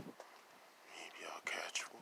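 A person whispering a few words for about a second, starting about a second in, with a soft thump right at the start.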